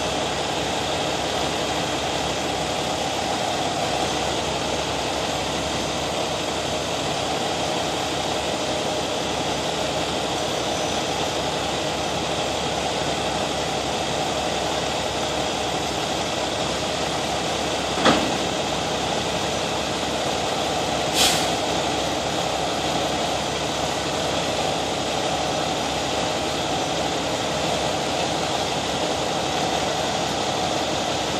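Heavy rotator wrecker's diesel engine running steadily, driving the boom hydraulics while the boom lifts and rolls a loaded tanker trailer. Two sharp knocks about three seconds apart, past the middle.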